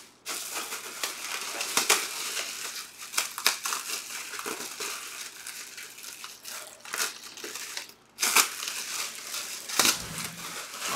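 Clear plastic wrapping crinkling and rustling, with scattered sharp knocks and taps, as a full-size football helmet is unpacked from its bag and box. There are brief pauses just after the start and about eight seconds in.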